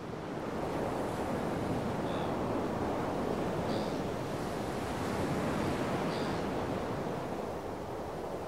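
Ocean surf washing onto a beach, a steady rush of waves that swells about half a second in, with a few faint high chirps above it.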